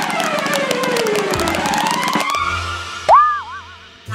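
Cartoon sound effects over background music: a whistle-like tone slides down in pitch and then back up, over rapid clicking. About three seconds in, a short loud tone leaps up and wobbles, then fades.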